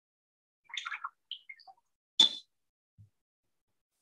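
Small handling noises of a paintbrush being worked on a palette and paper: a couple of soft brief scrapes and taps, then one sharp click about two seconds in.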